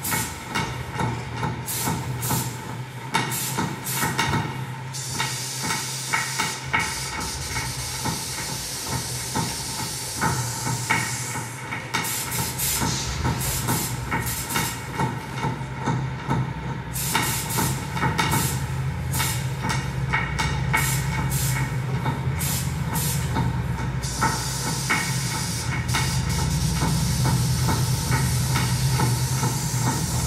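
Experimental electronic noise piece built from processed sounds of everyday objects, played live through a mixer and computer: dense, rapid glitchy clicking, washes of hiss that swell and drop away, and a steady low hum that gets louder over the last few seconds.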